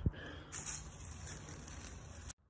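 A single sharp thump right at the start, then a steady hiss of outdoor background noise.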